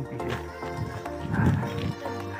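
Background music with long sustained notes, and a brief voice about one and a half seconds in.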